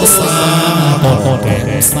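Chầu văn ritual singing with instrumental accompaniment: a singer holding long, drawn-out notes over the band, with two sharp bright strikes, one near the start and one near the end.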